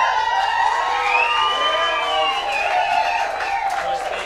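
Several audience members whooping and hollering together in long, overlapping high calls, fading out near the end.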